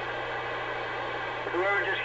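Steady static hiss from an open channel on a Ranger RCI-2980 radio, then about one and a half seconds in a distorted voice starts coming through its speaker.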